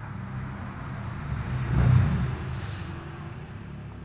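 Low engine hum of a passing motor vehicle that swells to its loudest about halfway through, then fades. A brief hiss follows just after the peak.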